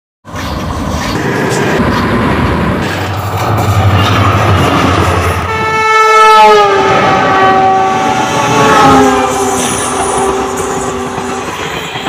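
Indian Railways train passing at speed: rumble and rattle of the wheels on the track, then from about halfway a loud, long locomotive horn whose pitch drops sharply as it goes by, its lower note held until near the end.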